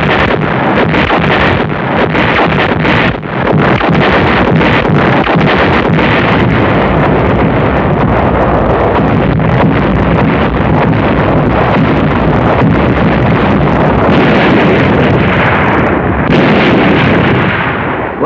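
A night battle barrage of explosions and artillery fire: continuous heavy noise dense with sharp blasts, packed most closely in the first few seconds.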